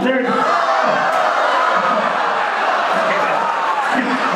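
A crowd cheering and shouting, many voices at once.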